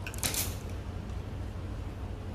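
A brief crackly rustle of silk cloth being handled and folded, about half a second in, over a steady low hum.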